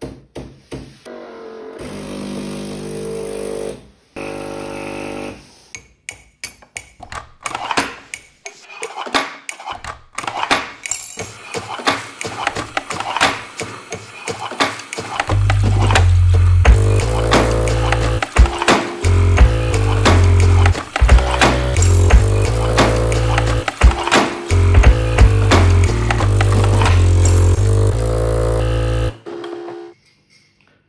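A lo-fi boom-bap beat built only from chopped coffee-machine samples, played on an Akai MPC. It opens with a few separate pitched stabs, then clicky percussion builds up. From about halfway a heavy bass line and drums come in for the full beat, which cuts off suddenly shortly before the end.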